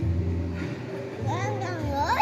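A young child's high voice rising and falling in the second half, over background music.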